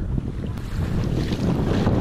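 Wind buffeting the microphone over choppy sea, with water slapping and splashing against a kayak's hull.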